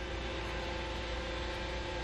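Flatbed tow truck running as the seized car is loaded: a steady mechanical hum with a constant-pitch drone and no change in level.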